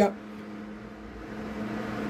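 Steady mechanical hum of a motor or fan running in the background, growing a little louder toward the end.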